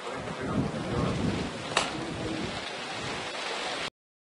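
Outdoor background noise: a steady hiss with a low rumble that swells about half a second in and fades about a second later, and one sharp click a little under two seconds in. The sound cuts off abruptly just before the end.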